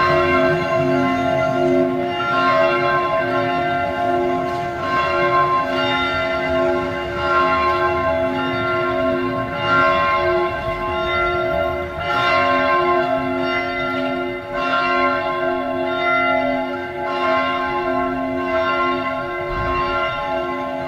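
Bells ringing, struck again and again about once a second, their tones ringing on and overlapping.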